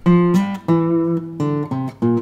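Fingerpicked steel-string acoustic guitar (Takamine) playing a short phrase of about five single notes that step down in pitch, slurred with pull-offs from the 3rd to the 2nd fret to the open third string, then back to the 2nd fret.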